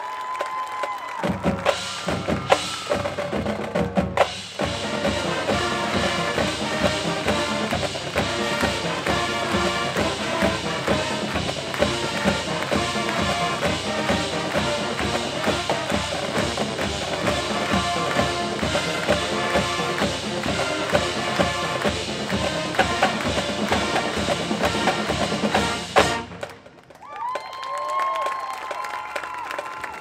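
A high school marching band playing its fight song: brass over a drumline with a steady drum beat. It starts about a second in and cuts off sharply about four seconds before the end.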